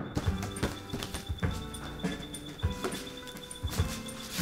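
Music from a vinyl record on a turntable, a quiet sparse passage of irregular clicking, knocking percussion over a faint sustained tone.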